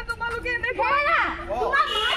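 Women's raised voices, with one voice sweeping sharply up and down in pitch, like a cry, about a second in.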